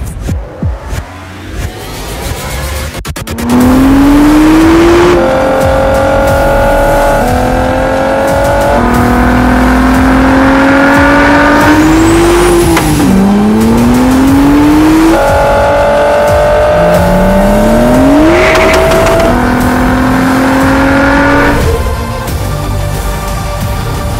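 Nissan sports car engine accelerating hard through the gears: the pitch climbs steadily in each gear and drops at each upshift, several times over. About midway a brief high whistle rises sharply.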